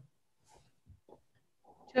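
Near silence with a few faint, brief noises in the middle, then a woman's voice starts at the very end.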